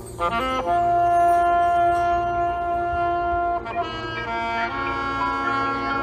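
Marching band music. A wind instrument plays a quick rising run into a long held high note over lower sustained tones, and a new chord comes in about four and a half seconds in.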